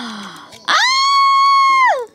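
A person's long, high-pitched squeal of excitement, held on one steady pitch for a little over a second and dropping away at the end, starting just under a second in. Before it, a short, breathy falling vocal sound.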